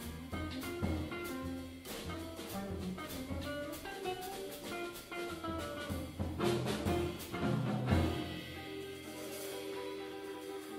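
Live jazz trio: archtop electric guitar playing melodic lines over plucked upright double bass and a drum kit with cymbal strokes. Near the end the low bass and drum strokes drop back, leaving held guitar notes.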